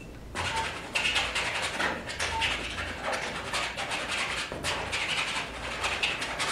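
Oil paint being scrubbed onto a canvas with a painting tool: a run of short, rough strokes, about two a second, beginning about half a second in.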